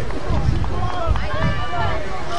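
Several voices of players and spectators shouting and calling out at once along a football sideline, with no clear words, over a gusty low rumble of wind on the microphone.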